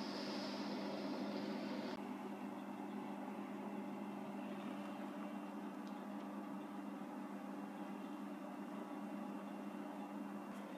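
A steady low hum with a hiss over it; the hiss drops away abruptly about two seconds in, leaving the hum.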